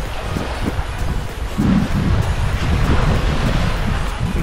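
Wind buffeting the microphone over the steady wash of surf on a beach, a fluttering low rumble with a noisy hiss above it.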